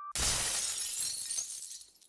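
A sudden crash sound effect that ends the intro jingle's chimes, a noisy burst that fades away over about a second and a half.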